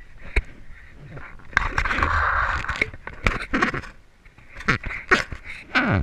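Handling noise from a wooden beehive frame covered in bees being lifted and turned: irregular knocks and scrapes, with a longer stretch of rustling in the first half.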